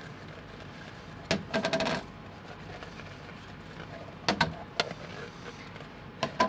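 Plastic petri dishes clicking and knocking as they are set down and slid about on a steel bench: a short cluster of clicks about a second and a half in, then two single clicks a little after four seconds. Under them, the steady fan noise of an air purifier running as a flow hood.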